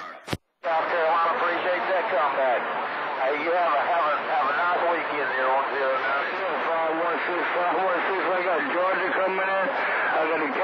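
A CB transceiver unkeys with a click, and after a moment's silence it receives channel 28 skip: the garbled, overlapping voices of several distant stations talking at once.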